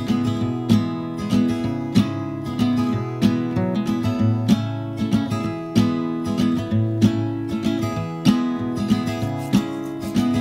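Acoustic guitar strummed in a steady rhythm, the instrumental opening of an indie-folk song.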